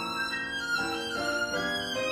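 Solo violin playing a slow melody of held notes, moving from note to note every half second or so.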